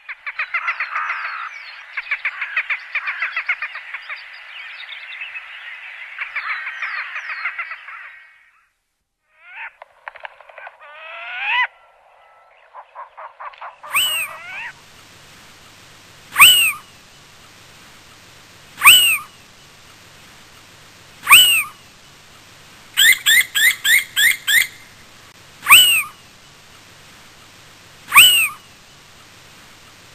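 A rapid, dense trilling chatter for about eight seconds, then a few scattered calls. From about halfway, a little owl calls: a loud, sharp note that rises and falls, repeated every two to three seconds, with a quick run of five shorter notes in between.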